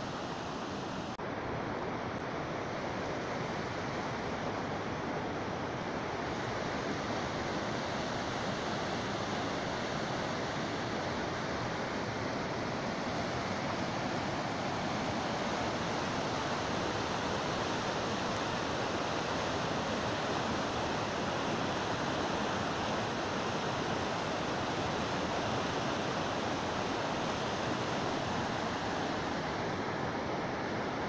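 Mountain river whitewater rushing over boulders in a steady, even roar of water noise, growing slightly louder in the first few seconds.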